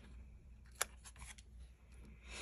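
Faint clicks and small taps of precision tweezers and a paper sticker sheet being handled while stickers are peeled and placed, with one sharper click just under a second in.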